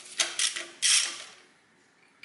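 Socket ratchet clicking in several short bursts as its handle is swung back and forth, unscrewing a spark plug from a Toyota 4A-FE engine's cylinder head; the longest burst comes about a second in and the clicking dies away soon after.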